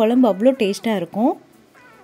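A woman's voice for about the first second and a half, its pitch gliding sharply upward near the end, then a brief lull.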